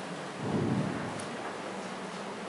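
Steady hissing background noise in a pause between words, with a soft low swell about half a second in.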